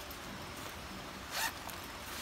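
Zipper on a nylon first aid pouch being pulled open, one short zip about a second and a half in.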